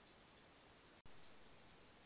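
Faint crunching of a hedgehog chewing dry kitten biscuits: scattered small, high clicks over a steady recording hiss, which drops out for an instant about halfway.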